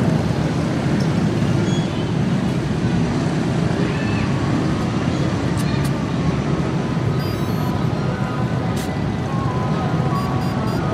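Steady road traffic noise, a continuous low rumble with no single vehicle standing out.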